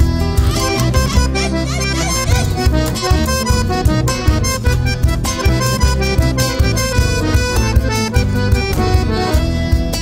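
Instrumental break of a chamamé-style folk song: an accordion playing the melody over guitar and bass at a steady, lively rhythm.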